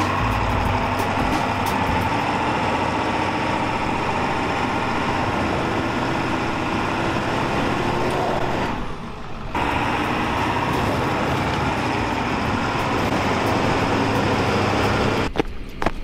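Pickup truck with a slide-in camper driving up a steep, rutted dirt hill, its engine working steadily under load. The sound dips briefly about nine seconds in.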